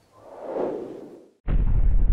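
Logo-reveal sound effect: a whoosh swells and fades, then after a brief gap a sudden deep bass hit lands about one and a half seconds in and slowly dies away.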